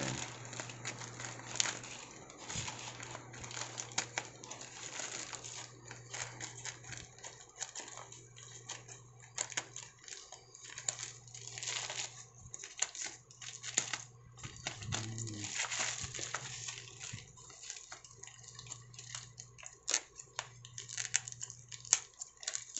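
Plastic courier mailer bag crinkling and rustling as it is handled and cut open with small thread-snip scissors, with many irregular sharp clicks. A steady low hum runs underneath.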